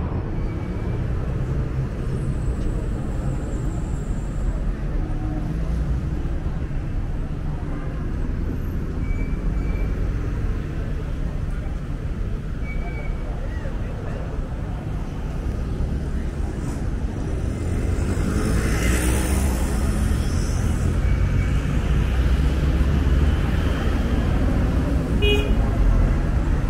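Busy city street traffic: cars and minibuses running past with a steady low engine rumble and a few short horn toots, and one vehicle passing close and louder about three quarters of the way through.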